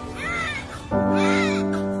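A newborn baby crying in short, arching cries, a few in quick succession, over background music whose sustained chord swells in about halfway through.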